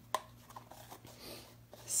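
Lid being put back on a jar of chalk paste: one sharp click near the start, then a few faint light taps and handling noises.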